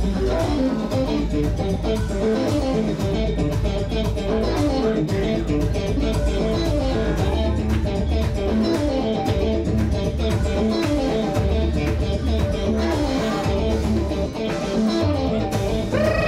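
Music: an electric guitar playing a quick, repeating melodic riff over a bass guitar line and a steady beat.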